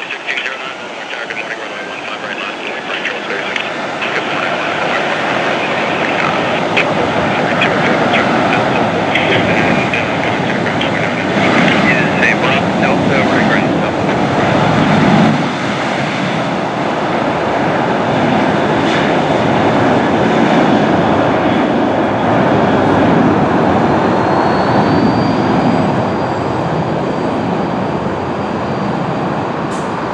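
Boeing 737 jet engines running up to takeoff thrust during the takeoff roll. The engine noise grows louder over the first few seconds and then holds steady, and a thin high whine rises in the last few seconds.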